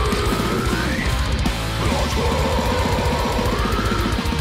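Death metal: a held lead guitar melody that bends upward twice, over fast, dense drumming and distorted guitars.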